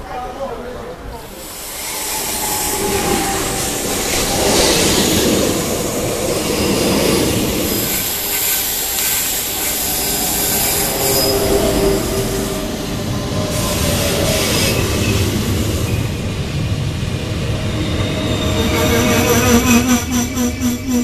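Renfe series 450 double-deck electric commuter train arriving alongside the platform, growing loud from about a second in. Its wheels and brakes squeal and whine as it slows into the station, and a fast rhythmic pulsing starts near the end as the cars pass close by.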